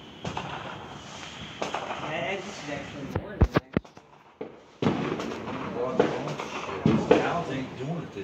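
Consumer fireworks going off: several sharp cracks and pops, the loudest a quick cluster about halfway through and another near the end, with people talking over them.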